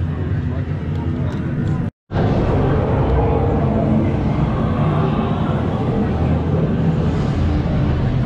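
Indistinct chatter of a crowd of theme-park guests over a steady low hum. The sound drops out completely for a moment about two seconds in, then the chatter carries on.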